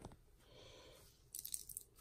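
A sweat-soaked cloth squeezed by hand over a sink, faint wet squishing, with a short spatter of sweat into the basin about a second and a half in.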